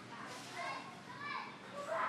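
Faint, distant children's voices, short high calls and shouts of children playing.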